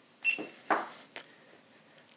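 A GoPro action camera being handled and set down on a wooden tabletop: a short knock with a brief high tone about a quarter second in, a louder thud, then a sharp click.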